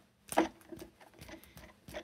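A sharp click about a third of a second in, then faint light ticks and rustling with another small click near the end, as a finger flicks the rotor of a Copal synchronous clock motor. The rotor has just come unstuck: sprayed with electronics cleaner, it now spins freely.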